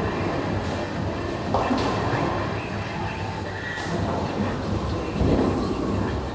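Bowling alley din: bowling balls rolling down the lanes with a steady low rumble, and pins clattering a few times.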